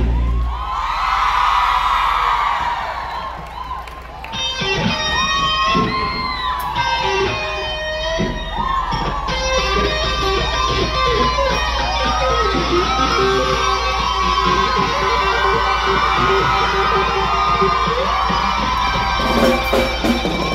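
Live electric guitar solo with repeated string bends gliding up and down in pitch, over a steady bass from the band. A crowd cheers in the first few seconds.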